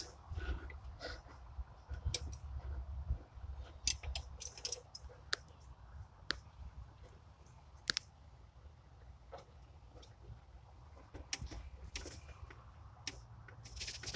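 Irregular light clicks and taps, about a dozen spread unevenly, over a faint low rumble: close handling noise as the camera and hands move among the engine's plug wires and distributor cap.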